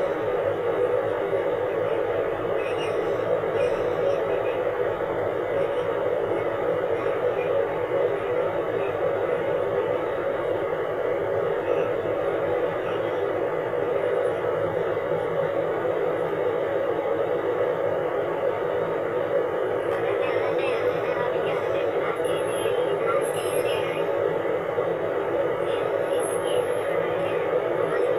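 A person's voice talking without pause, muffled and narrow in tone.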